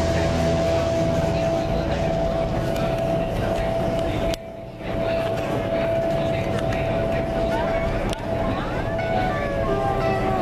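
Steady roar of an indoor skydiving wind tunnel's airflow, with a steady hum, voices and music mixed in. The sound drops away briefly about four and a half seconds in.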